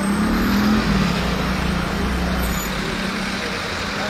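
A car's engine running close by as it drives slowly past, with a low rumble that is strongest in the first couple of seconds and then eases, over street traffic noise.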